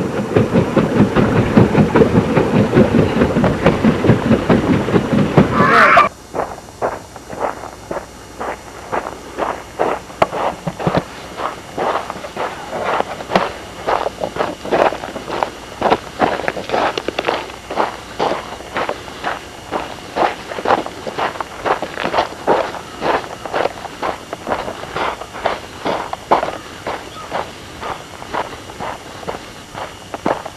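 A loud, dense, rapid clatter for about six seconds that cuts off abruptly. It is followed by footsteps of someone walking over a gravel track and grass, about two steps a second.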